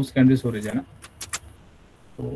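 A few words of a man's speech, then a quick run of computer keyboard keystrokes about a second in, as a search query is finished and entered.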